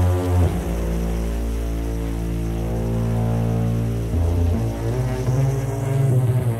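Techno music from a DJ mix: long held synth chords over a deep droning bass note that shifts pitch about half a second in and again around four seconds, with no clear beat.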